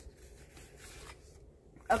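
Faint rustling of a plastic disc case sliding out of a corrugated cardboard mailer.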